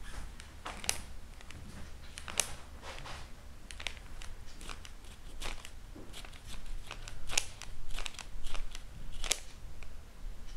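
Folded kami paper origami bat crackling and rustling in irregular sharp snaps as fingers squeeze and release it to flap its wings.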